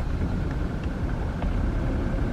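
Steady low rumble of a car's engine and tyres, heard from inside the cabin as it rolls slowly along a street.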